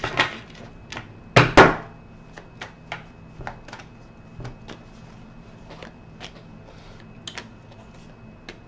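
Tarot cards being shuffled and handled by hand, with two louder card slaps about a second and a half in, then a run of light, irregular clicks and taps.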